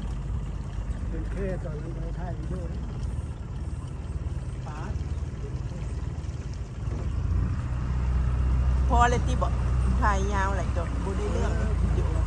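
Outboard motor of a small aluminium jon boat running steadily at low speed, a low rumble that grows louder about seven seconds in as the throttle opens.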